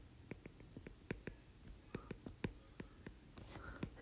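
A stylus tapping and stroking on a tablet's glass screen while handwriting words: a string of faint, irregular light clicks.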